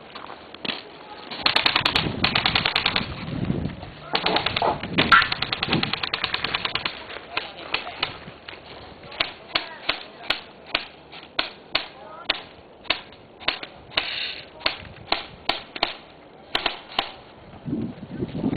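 Airsoft rifles firing: two rapid full-auto bursts in the first several seconds, then a long run of single shots, sharp clicks at about two to three a second.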